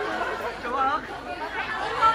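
Audience chatter in a large hall: several voices talking over one another at once.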